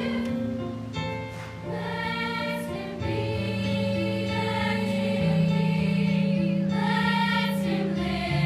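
Mixed high school choir, boys' and girls' voices together, singing held chords, with a brief softer moment between about one and two seconds in.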